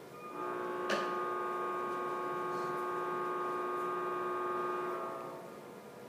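A sustained electronic chord of several steady tones from an educational web animation's audio over the classroom speakers, with a click about a second in, fading out after about five seconds.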